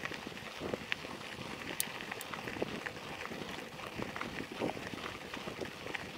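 Bicycle tyres rolling over a gravel road: a steady crunching hiss full of small irregular crackles and ticks from stones under the tyres, with a couple of sharper ticks about two seconds in.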